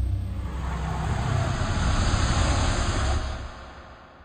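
A deep rumbling whoosh with a hissing top, a transition sound effect under a title card. It holds steady, then fades out in the last second.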